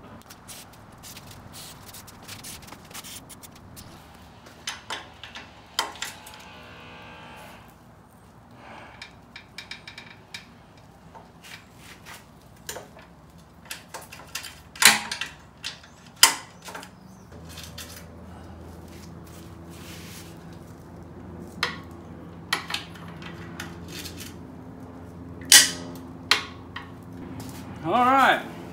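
Scattered metallic clicks and knocks of hand tools working the A-arm mounting bolts loose on a Yamaha YFZ450 frame, with a couple of sharper knocks in the second half. A steady low hum comes in a little past the middle.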